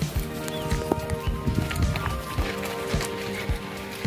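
Band music: sustained held notes over frequent drum beats.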